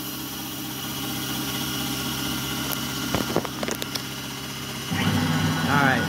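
CNC gantry mill humming steadily right after finishing its cut, with a few sharp clicks near the middle. About five seconds in, the axis motors start moving the gantry head off the part: the hum gets louder and a whine rises in pitch.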